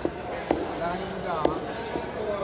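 A long heavy knife chopping through grouper flesh onto a thick wooden block: four sharp chops, roughly half a second to a second apart.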